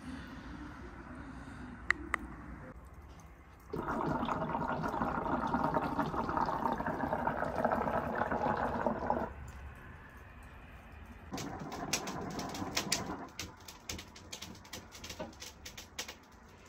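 Water bubbling in the glass base of a Kaya Elox Stallion hookah as smoke is drawn through it: one long draw of about five seconds, then a shorter one of about two seconds.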